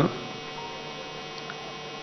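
Steady electrical mains hum in a microphone and sound-system feed: a constant buzz made of many even tones, with no change through the gap.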